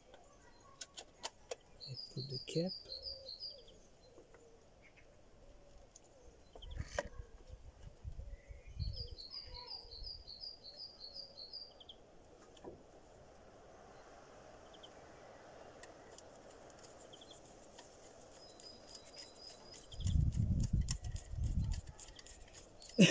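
A songbird sings a quick trill of evenly repeated high notes twice. Behind it are scattered light clicks and taps from hands working on the engine's ignition parts under the hood. Low rumbling bumps come in the middle and again, loudest, near the end.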